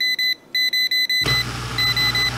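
Klein Tools non-contact voltage tester beeping rapidly, about eight high beeps a second, with a brief break near half a second and slower, longer beeps near the end. It is picking up voltage on the dishwasher's turquoise wash-motor supply wire: power is reaching the motor, which the owner takes as proof the wash pump motor itself has failed.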